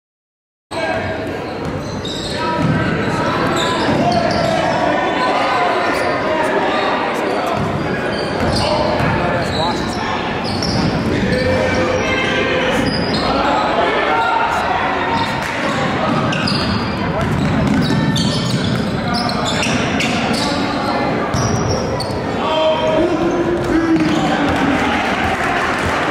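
Basketball game sound in a large gym: a basketball bouncing on the hardwood court amid echoing voices of players and crowd. It starts abruptly just under a second in.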